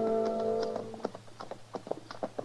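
A held music-bridge chord fades out in the first second. It gives way to a radio sound effect of horses' hooves clopping at a walk, a few steady knocks a second.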